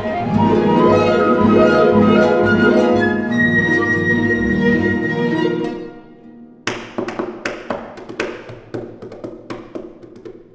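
Chamber ensemble of flute, violins, viola, cello, double bass and concert harp playing classical music, the flute holding a long high note near the middle. The playing thins out about six seconds in and gives way to a run of sharp, ringing taps, about two a second, that slowly fade.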